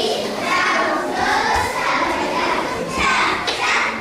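Many children's voices at once, echoing in a large hall.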